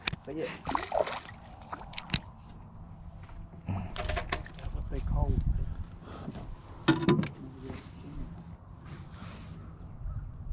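A small largemouth bass being landed by hand-lining into a small boat: scattered sharp knocks and clicks, strongest about two seconds in and again around four and seven seconds, with water sloshing against the hull and a low rumble in the middle.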